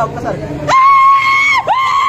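Two loud, high-pitched yells held at one steady pitch, each lasting about a second: a person whooping in excitement, breaking into talk about two-thirds of a second in.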